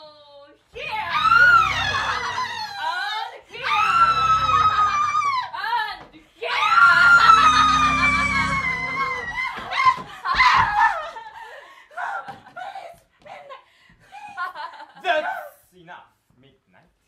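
A young woman's voice screaming in three long, high-pitched cries, the third sliding slowly down in pitch, followed by short, broken vocal bursts.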